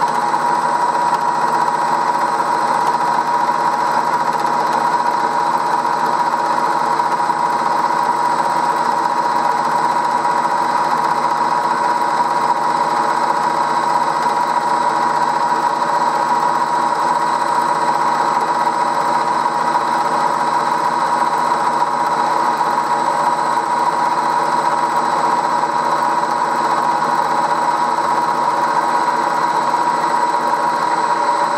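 Bridgeport M-head milling machine running steadily with a high whine while its hand-ground fly cutter cuts a groove along an aluminium workpiece.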